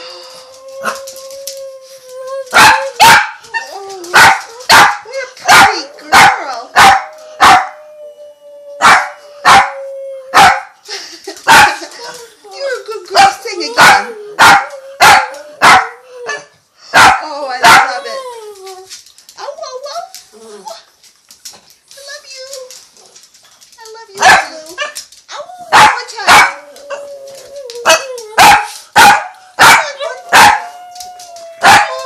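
A dog barking and baying with its head raised, in runs of short, loud calls about one or two a second, with a lull in the middle. A long, steady, slightly wavering held tone sounds underneath through the first ten seconds and again near the end.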